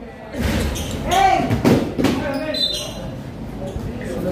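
A basketball bouncing on a hard court during play, with a few sharp thuds about half a second and two seconds in, amid shouting voices.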